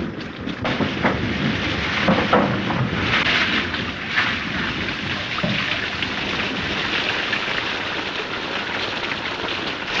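Heavy rain pouring steadily, with water falling down a wall and splashing. A few short knocks and splashes come in the first few seconds.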